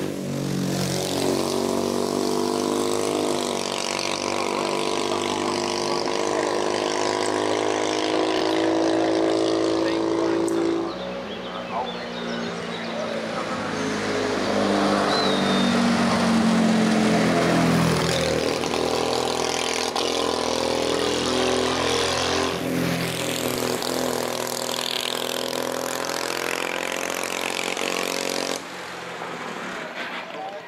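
Tatra 605 racing car's air-cooled V8 engine under hard acceleration, its pitch climbing steadily as it pulls up the hill. Several sudden jumps in level and pitch follow, as the car is heard from different points.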